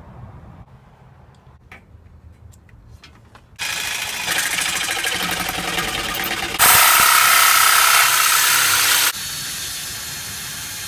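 Electric jigsaw cutting an aluminum trim strip. The saw starts sharply about a third of the way in, runs louder for a couple of seconds near the end as the blade bites, then drops back to a lower level.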